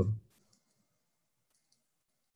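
A man's voice says one short word, then near silence with a couple of faint clicks, one about a third of a second in and one about a second and a half in.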